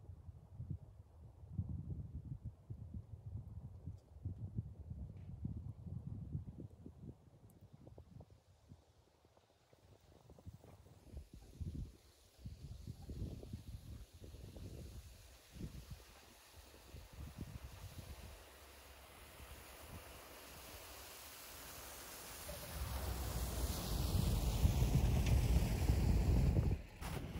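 Wind buffeting the microphone, then a Lexus GX470 SUV's V8 engine driving toward the camera through snow, growing louder over the last few seconds as it comes up close.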